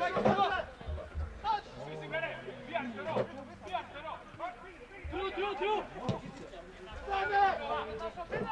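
Several people's voices calling out and chattering in the open, with a background hubbub of talk.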